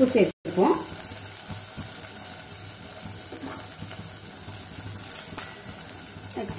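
Shallots, garlic and tomatoes frying in oil in a stainless steel pot, a steady sizzle.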